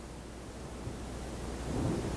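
Room tone: a steady low hum under an even hiss, with a faint soft murmur near the end.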